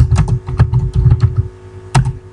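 Typing on a computer keyboard: an uneven run of key clicks entering a short chat message, with a sharper click near the end as the message is sent.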